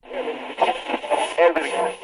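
A voice heard as if through a small radio or TV speaker, thin and tinny, with a thin steady high whine above it.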